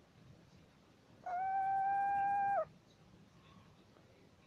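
A small owl giving one steady whistled note, held level for about a second and a half before it stops abruptly.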